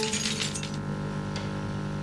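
Crash cymbal and electric guitar chord ringing out and fading after a rock band stops playing.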